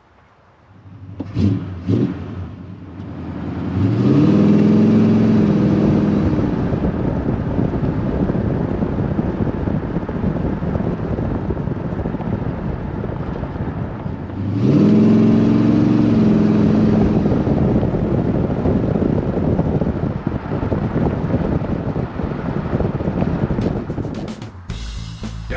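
1968 Chrysler 300's 440 cubic-inch (7.2-litre) big-block V8 with a three-speed TorqueFlite automatic, accelerating hard twice: the pitch rises about four seconds in and again a little past halfway, with steady running at speed in between and after. Two short knocks come just before the engine first builds.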